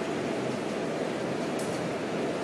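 Steady hum and hiss of supermarket background noise from refrigerated produce displays and air conditioning, with a short high hiss near the end.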